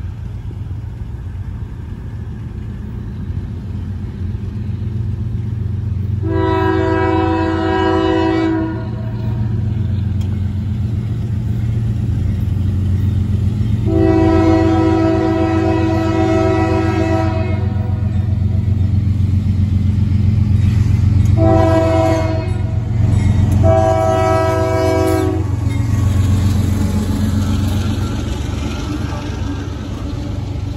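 CSX freight train's diesel locomotive blowing its horn for a grade crossing: long, long, short, long. The blasts sound over the steady rumble of its engines, which grows louder as it approaches. Near the end the freight cars roll past close by.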